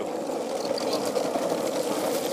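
Longboard wheels rolling over asphalt with a steady rumble.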